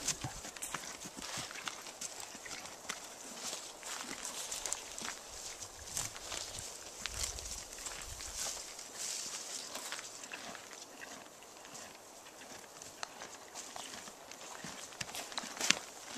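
A wild horse grazing close by: irregular crisp crunching and tearing of grass and brush as it bites and chews.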